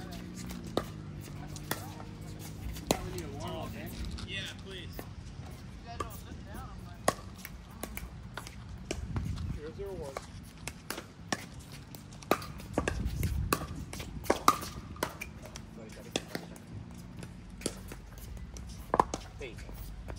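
Pickleball paddles striking a plastic ball in a doubles rally: sharp pops roughly once a second, some louder and some fainter.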